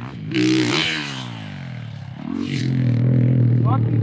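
Dirt bike engine under throttle. Its pitch falls away about a second in as the throttle is rolled off, then it picks up again and holds a steady, loud note through the second half.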